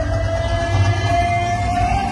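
Loud DJ music from a street sound system: a heavy bass beat under one long held note that rises slightly in pitch.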